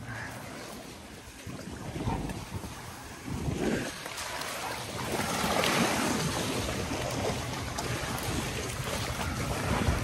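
Wind buffeting the microphone over small waves washing onto a sandy shore, the rush swelling about halfway through.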